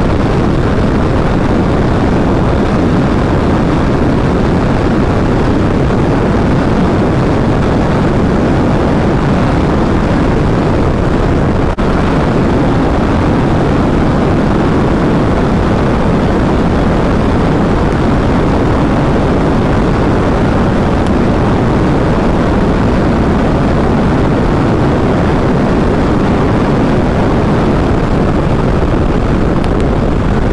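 Yamaha MT-07's 689 cc parallel-twin engine running steadily at high revs in sixth gear at about 180–190 km/h, mixed with a heavy, steady rush of wind and road noise on the camera microphone. The level dips briefly about twelve seconds in.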